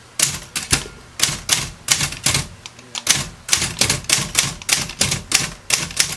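Royal 10 manual typewriter being typed on: typebars striking the platen through a silk ribbon, a quick run of sharp clacks at about four a second in an uneven rhythm.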